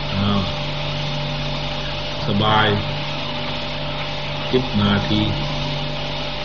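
A monk giving a sermon in Thai in a few short, slow phrases with long pauses between them, over the steady hum and hiss of an old, low-fidelity recording.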